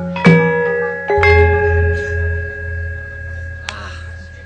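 Javanese gamelan playing: bronze metallophone keys struck a few times, each note ringing on. About a second in, a deep stroke that is typical of the large gong rings under them with a slow throb and fades away; another single strike comes near the end.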